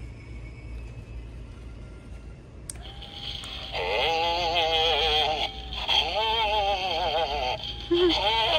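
Animated Halloween skeleton prop set off with a click about three seconds in, then sounding through its small speaker: a steady tone and two long phrases of synthetic, wavering singing with heavy vibrato.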